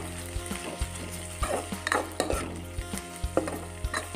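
A steel spatula stirring onions, garlic and ginger paste frying in oil in a metal kadai: a sizzle with irregular clicks and scrapes of the spatula against the pan, over a steady low hum.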